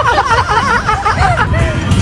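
Several voices talking over one another, with a woman laughing, over a steady low rumble.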